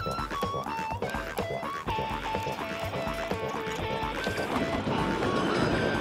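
Background music: a bouncy melody of short held notes over a steady beat, with a wash of noise swelling in over the last second or so.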